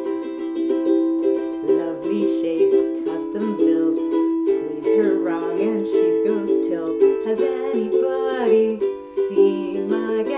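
Ukulele strummed steadily, playing the chords of a song.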